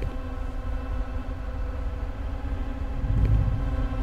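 Low, steady rumbling drone with several held tones over it, the kind of dark ambient score used in horror films; about three seconds in it swells into a deeper low boom.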